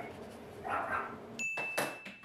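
Teeth being brushed with a wooden toothbrush: a scrubbing stroke about a second in. Near the end come a steady high tone and a couple of sharp clicks.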